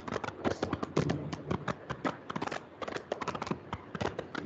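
Rapid, irregular clicking, about eight to ten sharp clicks a second, like keys being tapped.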